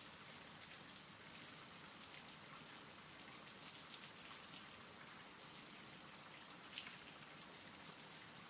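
Faint, steady rain: an even hiss of falling rain with fine scattered drop sounds.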